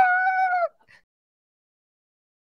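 A woman's high-pitched, drawn-out vocal squeal that cuts off abruptly under a second in; the rest is silence.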